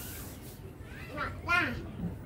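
A small child's high-pitched voice: a short vocal sound with its pitch rising and falling, loudest about a second and a half in.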